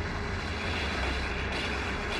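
Steady low engine-like rumble with a loud even hiss over it: the vehicle sound effect of the film's armed car.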